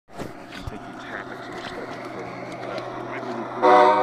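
G scale model diesel locomotive: a steady low hum with scattered small ticks, then a short, loud horn toot about three and a half seconds in.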